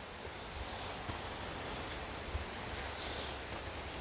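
Footsteps on stone trail steps and light rustling from the moving camera, over a steady faint outdoor hiss, with a few soft low thuds and a small click about two seconds in.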